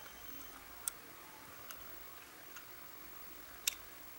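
Four faint, sharp clicks under a second apart over quiet room hiss, the last one near the end the loudest and doubled.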